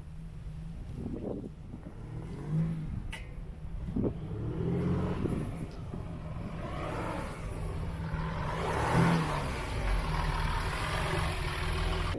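Next Gen Ford Ranger's V6 turbo-diesel engine driving the ute out of a bog in soft sand on recovery boards, in four-low with the rear diff locked. The engine runs steadily with the revs rising several times, most strongly about two and a half, five and nine seconds in.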